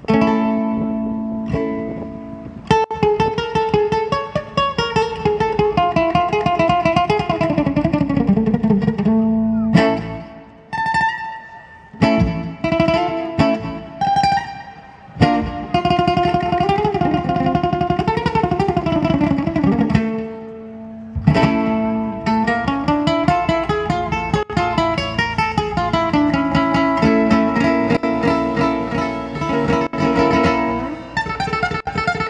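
Ukulele played live, an instrumental run of quickly picked and strummed notes, broken by a few short pauses partway through.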